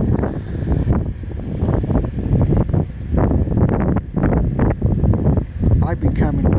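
Wind buffeting the phone's microphone, a loud uneven rumble that rises and falls.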